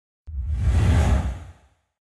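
Whoosh sound effect with a deep rumble under it, as a TV station's animated logo sting: it starts suddenly about a quarter second in, swells and fades away about a second later.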